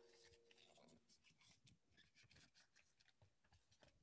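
Near silence: room tone with a few very faint light ticks.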